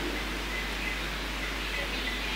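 Steady room hiss with a faint, distant voice: a listener answering off-microphone.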